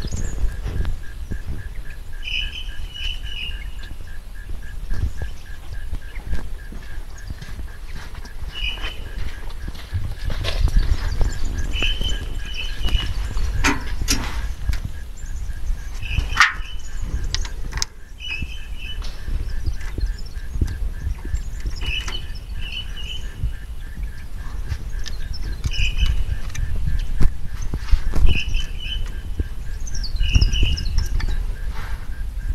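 A bird repeating a short double chirp about every two seconds, over a steady low rumble, with a few sharp clicks around the middle.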